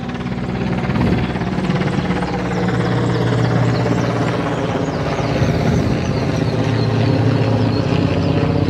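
A steady low mechanical drone, like an engine or rotor, swelling slightly over the first few seconds, with faint high chirps over it.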